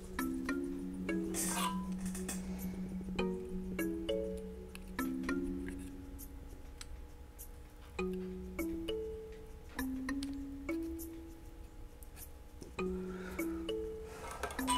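Soft background music: a slow melody of sustained notes over a held low note, with scattered faint clicks.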